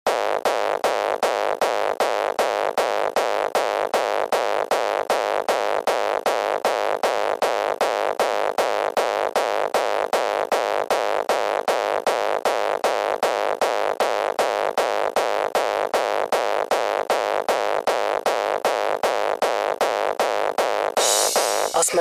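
Electronic dance track intro: a synthesizer pulse repeats rapidly and evenly, with its weight in the midrange and little bass. About a second before the end, a high hiss of noise rises in.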